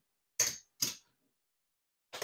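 Casino chips clacking as a stack is counted out by hand: two sharp clicks about half a second apart.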